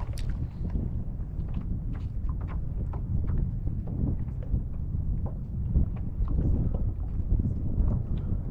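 Wind buffeting the microphone, a steady low rumble, with light irregular ticks and small splashes over it.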